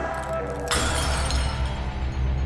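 Helmet visor glass shattering: one sudden break about two-thirds of a second in, with a ringing tail that fades away, over a low droning music bed.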